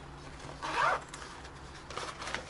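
Zipper on a padded nylon tripod case pulled in one short quick run, a little over half a second in.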